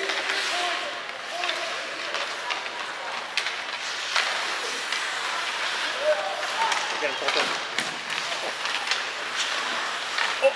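Live ice hockey play: skate blades scraping the ice and sharp, irregular clacks of sticks and puck, with players' shouts.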